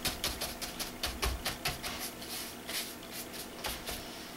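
Fast, fairly even tapping, about seven taps a second, of a paint tool being dabbed onto a paper art journal page.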